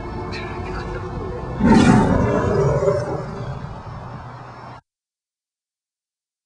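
Dramatic background music, then a loud tiger roar about one and a half seconds in that fades away over a few seconds; the sound then cuts off suddenly.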